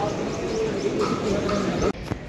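Crowd voices in a busy hall with birds calling over them, short high chirps repeating through the moment; the sound drops off abruptly near the end.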